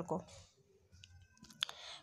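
A short pause in a woman's speech: her word trails off at the start, then a few faint clicks, the sharpest about one and a half seconds in, and a soft hiss of breath just before she speaks again.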